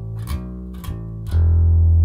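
Electric bass guitar, fingerpicked: a few short low notes, then a long low note held from about two-thirds of the way in.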